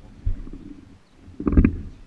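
Muffled low rumbling and knocking from a GoPro mounted on a swinging baby swing, as the swing's motion buffets the camera. It surges twice, briefly near the start and more strongly past the middle.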